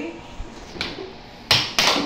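Air hockey mallet and plastic puck clacking on the table: a light tap, then two sharp, loud knocks in quick succession near the end as the puck is struck hard and hits the rail.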